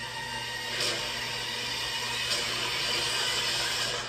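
Film-trailer sound effects: a hissing rush that steps up about a second in and then holds steady, with faint sustained tones beneath it.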